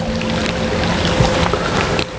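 Mountain stream rushing over rocks, a steady splashing noise.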